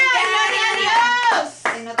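A man's loud, drawn-out exclamation, held for over a second, then a few sharp hand claps near the end.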